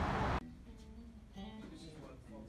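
Loud steady street noise cuts off abruptly less than half a second in. It gives way to the quieter inside of a guitar shop, with people talking and a guitar being played.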